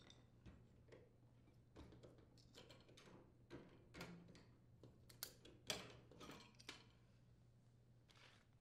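Faint, scattered clicks and light metallic knocks as the old gas oven safety valve is worked free of its gas supply tubes and mounting tabs and lifted out, the loudest knock a little before six seconds in.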